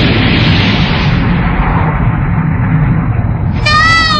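Loud, continuous rumble and crash of a stone stadium collapsing, with rock breaking and falling as an anime sound effect. The sound grows slightly duller as it goes on.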